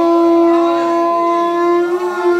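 A conch shell (shankh) blown in one long, steady, loud note during a puja ritual. Its pitch lifts slightly as the note ends.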